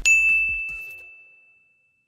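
A single bell ding sound effect: one bright strike whose clear high tone rings on and fades away over about two seconds.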